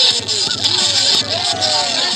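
Onlookers shouting and hyping over bass-heavy hip-hop music with a steady beat.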